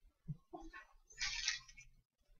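Faint handling sounds at a soldering bench: a soft knock, then a short hiss about a second in, as the soldering iron and copper desoldering braid are lifted off a phone circuit board's solder pads.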